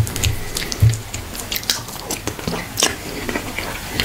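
Close-miked eating by hand: wet chewing and mouth clicks, irregular and continuous, with a few soft low thumps, as fingers work through egusi stew and fufu.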